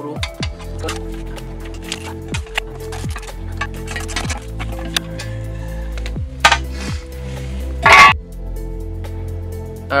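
Electronic background music with held synth notes and repeated falling slides. A few sharp clicks run through it, and a loud clatter comes about eight seconds in.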